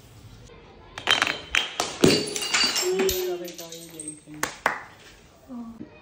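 Glass bottles smashing on concrete steps: a burst of sharp crashes and clinking, ringing glass starting about a second in, with a few more clinks of shards near the end.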